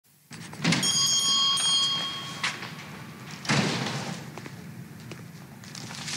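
A door opening with a ringing, bell-like tone that lasts about a second and a half, a click, then a heavier thud about three and a half seconds in, heard in a large, echoing room.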